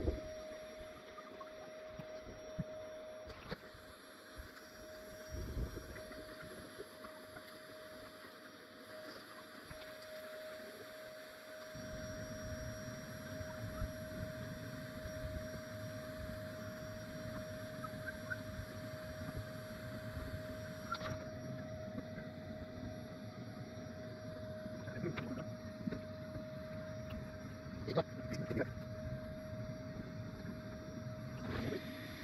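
A bee vacuum's motor runs with a steady whine while it draws bees in through a hose at the wall cavity. From about twelve seconds in, a low rumble of wind or handling noise joins it, with a few light knocks near the end.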